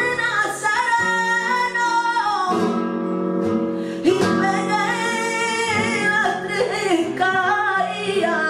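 A woman singing flamenco cante with long, ornamented notes that waver and slide between pitches, accompanied by a flamenco guitar.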